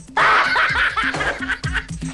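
Laughter breaking out suddenly over music with a steady bass-drum beat about twice a second.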